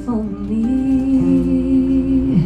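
A woman's voice holding one long sung note over acoustic guitar accompaniment.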